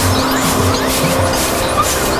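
Experimental electronic noise music from synthesizers: a dense, noisy drone with a held steady tone, short rising pitch glides and a pulsing low end.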